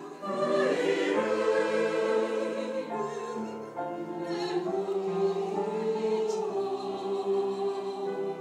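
Mixed church choir singing, holding long chords that change every second or so.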